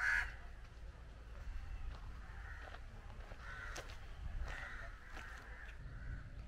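Birds calling outdoors: one loud call right at the start, then several fainter calls spread through the rest, over a steady low rumble.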